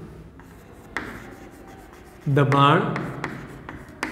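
Chalk writing on a chalkboard: a soft scratching with light taps as strokes start, a few more sharp taps near the end. A man's voice draws out a brief syllable just past the middle.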